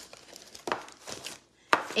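Paper crafts and a plastic tray being handled on a tabletop: rustling, with a couple of short knocks.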